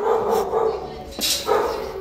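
Dogs barking in a shelter's kennels, in irregular bursts.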